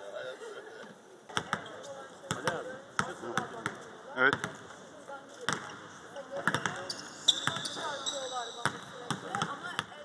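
Basketballs bouncing on an indoor court during a practice session, irregular thumps at about two a second. There is a brief high squeak about seven seconds in.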